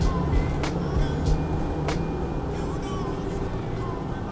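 Mercedes Sprinter van engine running at low speed in slow town traffic, heard from inside the cab as a steady low hum. Sharp ticks come at a regular pace, about every 0.6 seconds.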